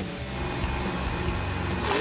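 Monster truck engine running as the truck drives toward a ramp.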